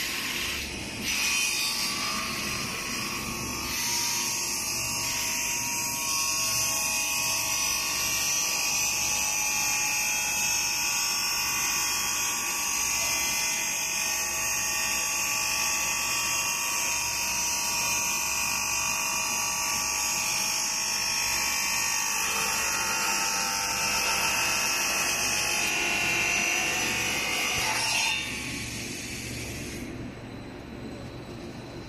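Circular saw of a PVC foam board extrusion line's traverse cross-cutter running with a loud high-pitched whine as it travels across and cuts the board, starting about a second in and stopping suddenly near the end.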